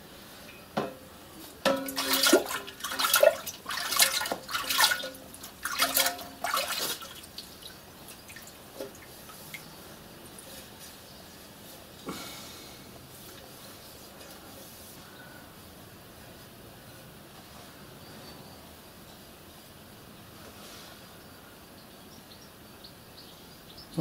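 Water splashing and sloshing in a plastic bowl for about five seconds as a soldered brass tank is turned over under the surface in a leak test. About twelve seconds in there is one more short splash as a rag is dipped in, then only quiet room tone.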